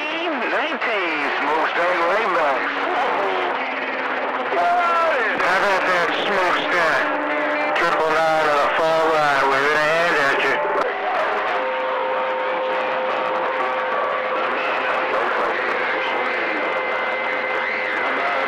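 CB radio receiving skip on channel 28 (27.285 MHz): garbled, unintelligible voices coming through static for the first ten seconds or so. From about 11 s in, steady whistling tones sit over the hiss.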